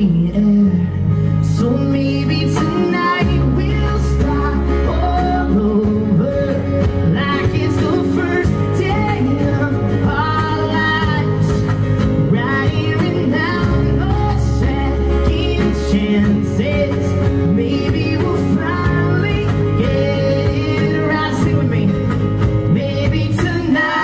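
Live band music: a male lead voice singing over strummed acoustic guitars, a bass guitar and a drum kit with steady cymbal strikes.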